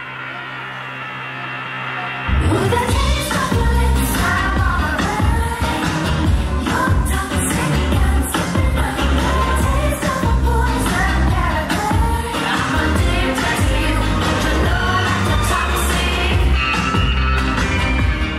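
Pop dance music with singing. For about the first two seconds a held chord plays quietly, then a heavy beat and vocals come in together and carry on to the end.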